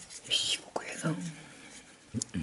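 A man's breathy whisper, then a short low hum falling in pitch, muttered to himself.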